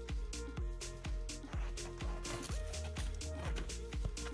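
Background music with a steady beat and a sustained bass line.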